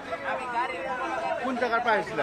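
People talking at once: overlapping chatter of several voices.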